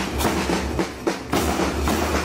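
Marching band side drums and bass drums beating a steady march rhythm, about four strokes a second, with a brief lull about a second in.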